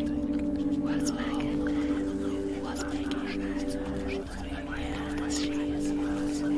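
Whispering voice over a steady drone of held notes.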